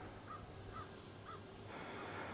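A bird calling faintly three times, short calls about half a second apart.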